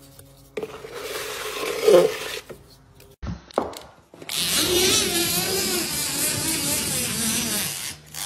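Faint scraping of joint compound being worked in a plastic bucket. About four seconds in, a drywall-finishing machine starts a steady, wavering mechanical whir with scraping as it spreads compound along an inside corner.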